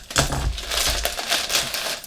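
Clear plastic bag crinkling and rustling as a plastic model kit sprue inside it is handled.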